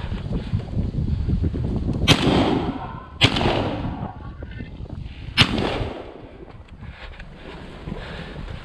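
Three shotgun shots, about two, three and five and a half seconds in, each ringing out in a long echo through the forested valley.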